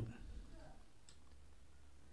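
Faint handling of small plastic USB pen drives and a USB hub: one light click about a second in, over a low steady hum.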